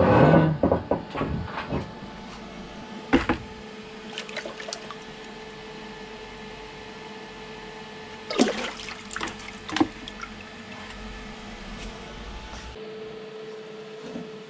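A hot, freshly welded steel bearing housing plunged into a bucket of water: a loud splash and rush of water as it goes in, then water sloshing with a few knocks as it is held under. The quench is meant to cool the tapered roller-bearing cup so it shrinks loose in its bore.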